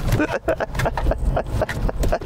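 Mercedes S-Class saloon being driven through a tight cone slalom on a wet track: a steady low engine and road rumble, with voice sounds over it.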